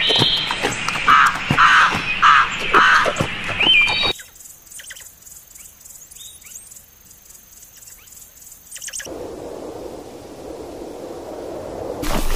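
Crows cawing: four harsh caws about half a second apart among other bird calls. After about four seconds the sound drops abruptly to faint, high chirps and later a soft hiss.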